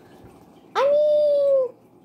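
A single high-pitched whine, about a second long, starting a little under a second in. It rises quickly, holds steady and dips slightly at the end.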